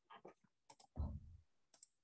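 Computer keyboard keys clicking faintly in a few scattered keystrokes, with a duller thud about a second in.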